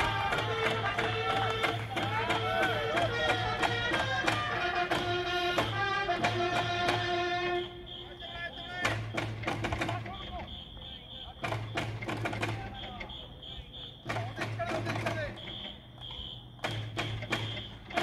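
Baseball cheering section singing a cheering song to a steady beat on big drums. About halfway through the singing stops, leaving drum strokes and short blasts of a shrill electronic whistle.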